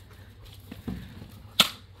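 A single sharp crack about one and a half seconds in, over almost at once, with a few faint knocks before it against a quiet background.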